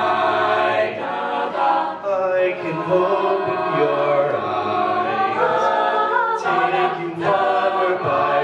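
Mixed-voice a cappella group singing a ballad, a male lead on a handheld microphone over sustained vocal harmony from the ensemble.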